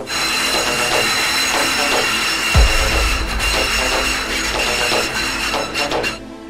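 Light-rail train running on an elevated track: dense rumble and hiss of steel wheels on rail with steady high squealing tones. A deep falling bass thump comes in about two and a half seconds in and a low rumble holds after it.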